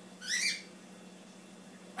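Bearded dragon letting out one short, high squeak that rises in pitch as its body is squeezed, like a squeaky toy.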